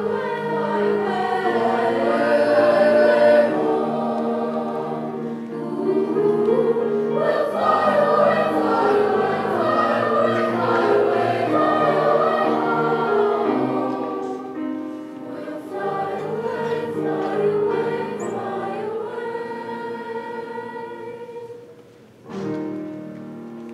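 A school choir of mixed voices singing sustained chords. It swells to its loudest around the middle, then tapers, and the phrase dies away at the very end.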